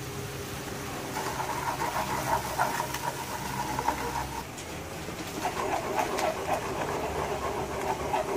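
A spoon stirring soy sauce and brown sugar in a pan to dissolve the sugar, with a few short scraping strokes, over a steady hum that stops briefly about halfway through.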